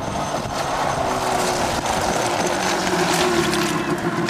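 Quad ATV engine running with a steady note as the four-wheeler drives up close.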